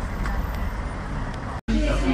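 Street traffic noise with a low rumble from cars and a bus close by. It cuts off abruptly near the end, giving way to voices in an indoor room.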